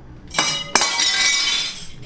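A dish dropped and smashing on a hard floor: a first hit, then a sharper crash about three quarters of a second in, followed by a second of shards clinking and scattering.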